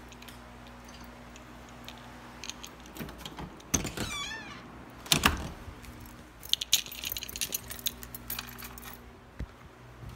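A bunch of keys jangling in clusters of metallic clinks in the second half, with a couple of heavy thumps and a brief wavering high squeak a little after four seconds in.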